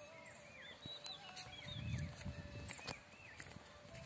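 Faint bird calls: a quick run of short, arched whistled notes, several a second, with a low rumble about two seconds in.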